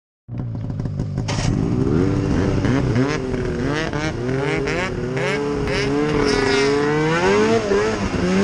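Snowmobile engine running under throttle, its pitch rising and falling again and again as the rider works the throttle, with scattered short clicks over the first few seconds.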